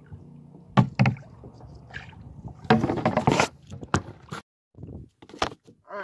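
Two sharp knocks against a kayak hull about a second in, then a burst of splashing and a few more knocks: a large grass carp thrashing against the kayak as water slops in over the side.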